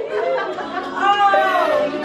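Excited women's voices squealing and exclaiming, high-pitched, with one long drawn-out cry about a second in.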